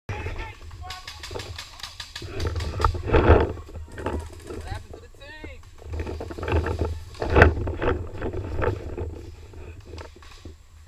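Voices calling out at a distance over rustling and movement in dry leaves, with a quick run of sharp clicks or pops between about one and two and a half seconds in.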